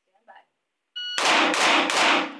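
A shot timer beeps once, then a red-dot-sighted pistol fires three shots about a third of a second apart, each echoing off the walls of an indoor range bay.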